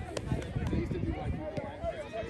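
Indistinct voices of spectators and coaches around a youth soccer field, faint and overlapping, over a low irregular rumble.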